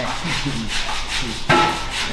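A quick series of rubbing or scraping strokes, with one sharp clink that rings briefly about one and a half seconds in.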